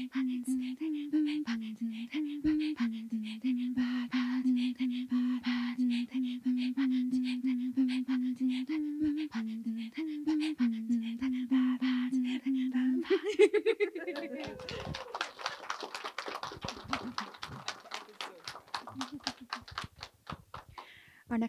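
Inuit throat singing (katajjaq) by two women face to face: a steady, droning voiced tone that steps between a few pitches under a quick rhythmic pulse of breaths. About thirteen seconds in it rises in pitch and breaks off as the duet ends. This is followed by audience applause.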